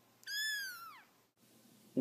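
A young kitten gives one short, high-pitched meow that rises a little and then falls away.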